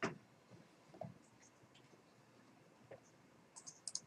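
Faint computer-mouse clicks and small desk sounds: a sharp click right at the start, another about a second in, and a quick run of light ticks near the end.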